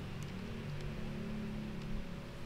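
A low steady hum with a faint held tone, and a few soft clicks, about three in two seconds.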